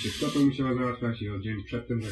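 A man's voice speaking, with a brief hiss right at the start.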